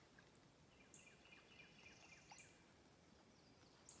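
Near silence with faint bird calls: a run of short chirps between about one and two and a half seconds in, and a brief high note repeated about every second and a half.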